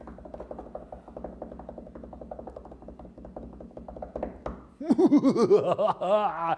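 A drumroll, a fast, even run of light beats that builds suspense before a winner is announced. It stops near the end, when a loud voice breaks in.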